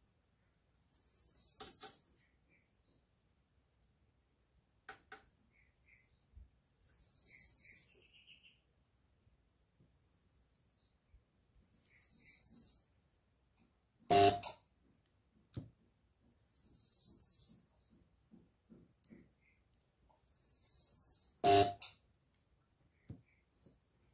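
Spot welder tacking tabs onto battery cells: two sharp snaps, about 14 and 21 seconds in, with a few lighter clicks, between soft hissing swells that rise and fade every five seconds or so.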